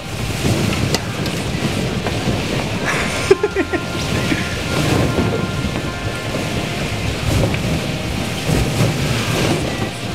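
Masses of rubber balloons being shoved and tumbling against one another, giving a dense, continuous rubbery rumbling rustle. There are a few short squeaks of rubbing balloons about three seconds in.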